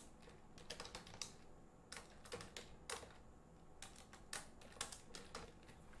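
Faint typing on a computer keyboard: irregular runs of quick keystrokes with short pauses between them.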